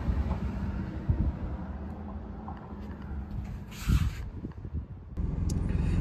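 Low, steady outdoor rumble with a few light clicks and a short rustling burst about four seconds in. Shortly after five seconds the background changes abruptly to a steadier, louder low hum.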